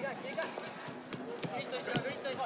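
Several sharp thuds of a soccer ball being kicked during practice, with players' voices calling out across the pitch.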